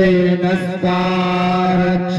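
A single voice chanting a Hindu mantra on long, steady held notes, with a short break a little under a second in.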